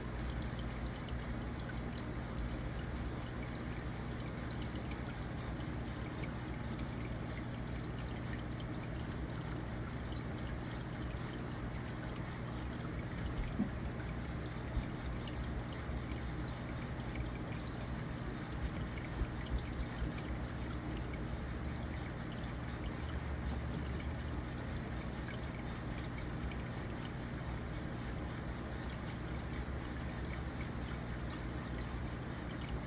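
Aquarium filter water trickling steadily, over a low steady hum, with a few faint ticks partway through.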